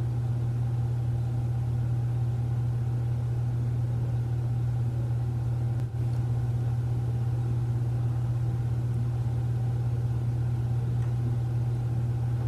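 A steady low hum with no other clear sound, broken by a brief dip about six seconds in.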